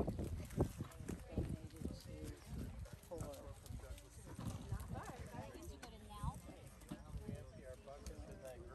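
Background chatter of a group of people talking at a distance, with scattered light knocks and clicks.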